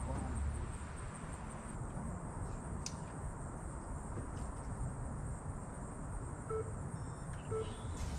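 Outdoor ambience: a faint insect trill pulsing a few times a second over a steady low rumble. From about six and a half seconds in, short electronic beeps sound about once a second.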